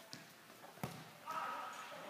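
A futsal ball struck once with a sharp thud about a second in. Players' voices call out after it.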